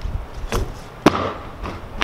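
Two sharp knocks about half a second apart, the second louder, as a traffic cone's rubber base is set down on concrete.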